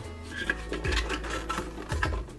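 Small hard plastic toy figures clattering and rubbing against each other and the inside of a clear plastic bucket as a hand rummages through them, a run of small irregular clicks.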